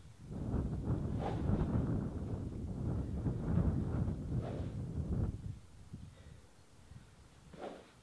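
Wind buffeting the microphone, a low rumble for about five seconds that then dies down. Over it come about three brief whooshes, roughly three seconds apart, as a SuperSpeed Golf training stick is swung fast.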